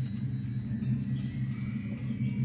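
Concert band of young clarinet and wind players holding a sustained low chord in a slow piece, growing slightly louder.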